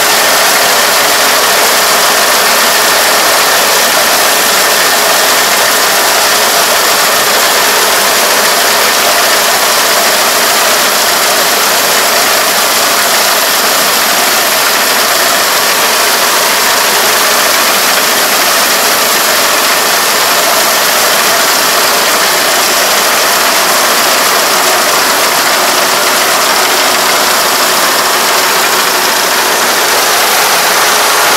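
Four-row rice combine harvester running under load as it cuts and threshes a rice crop: a loud, steady machine noise with a faint constant whine.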